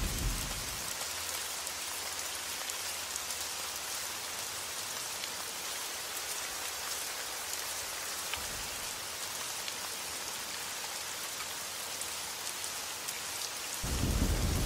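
Steady light rain, an even patter of drops on a surface.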